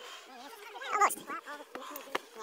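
Other people's voices calling and chatting, with one louder high-pitched call about halfway through.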